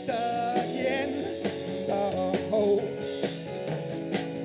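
Live rock band playing an instrumental stretch between sung lines: electric bass, keyboard and drums, with a bending, wavering lead melody on top.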